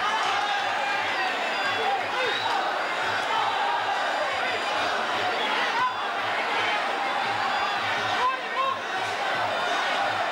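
Packed Muay Thai crowd shouting continuously over a steady low drum beat of the ringside fight music, about two to three beats a second.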